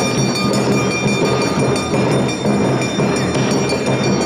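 Awa odori festival band on taiko and shime-daiko drums, playing a dense, driving beat with steady high ringing tones over the drumming.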